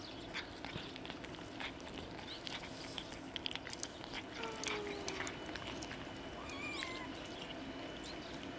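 Cats chewing shredded chicken breast: quick, irregular wet clicks and smacks of eating. A faint, brief high call sounds near the end.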